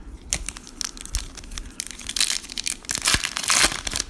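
Foil wrapper of a trading-card pack crinkling and tearing as it is ripped open, in quick crackles that grow denser and louder in the second half.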